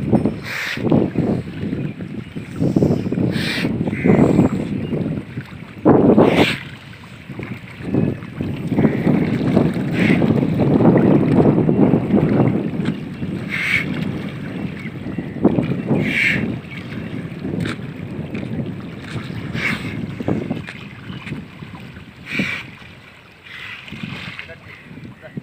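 A bull swimming in a pond, its legs churning and splashing the water irregularly, with wind buffeting the microphone.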